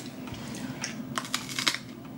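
Biting and chewing a firm, crisp donut peach: a few short crunches scattered through the moment.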